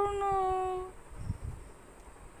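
A woman's voice whining in a long, drawn-out note that falls slightly and stops about a second in.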